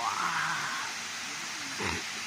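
Waterfall rushing steadily, with faint voices in the background, a short rising sound at the start and a brief thump near the end.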